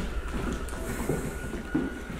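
A man's voice faintly shouting at a distance, over a steady low rumble.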